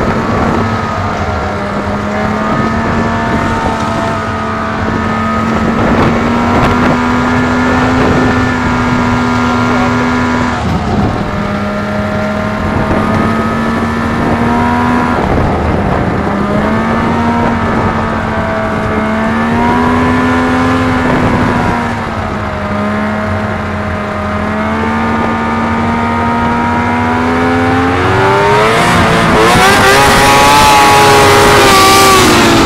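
Yamaha snowmobile engine running hard at speed, its pitch sagging and recovering several times as the throttle eases and opens again, then climbing steeply near the end as it accelerates.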